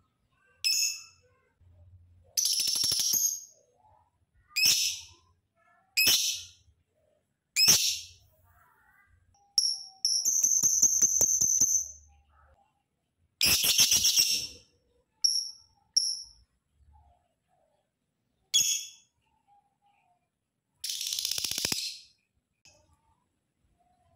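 Lovebird calling: a string of about a dozen shrill, high-pitched chirps a second or two apart. Four of the calls are longer rapid buzzing trills lasting one to two seconds, the longest about ten seconds in.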